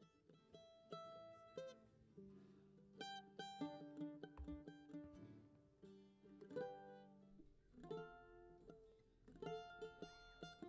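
Faint guitar picked slowly note by note, each note ringing on, with a few longer low notes underneath: a quiet instrumental lead-in to a song.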